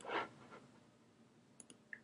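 Faint computer mouse clicks, a few light ticks about a second and a half in, after a short soft noise at the start.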